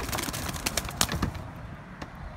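Pigeons stirring in a wire cage: a rapid, irregular rustling clatter, like wing flutter, that fades out about a second and a half in.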